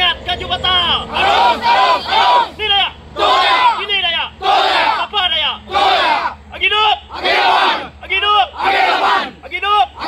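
A large group of men shouting a short cry together, over and over, about once a second.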